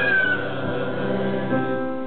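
Grand piano playing the accompaniment of a slow Christmas song, with a sung note sliding down and ending right at the start before the piano carries on alone.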